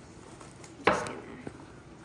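Paper packaging of a toy blind bag handled on a wooden table: one sudden crackling knock a little under a second in, fading quickly, then a faint click.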